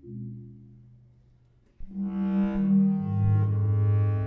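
A low marimba note struck with yarn mallets, ringing away for nearly two seconds. Then bass clarinet enters louder with held low notes, stepping down to a lower note about a second later, over soft marimba.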